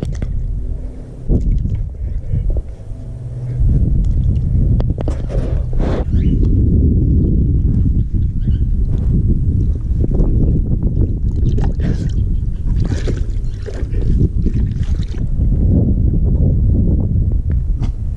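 Water sloshing and splashing in a plastic kiddie pool, heard close and muffled, as a hand and a wading husky move through it. It grows louder a few seconds in and stays loud.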